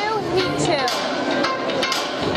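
Announcer's voice over a hall PA echoing as the heat number is called, followed by a few sharp clicks and taps in the second half, just before the cha cha music begins.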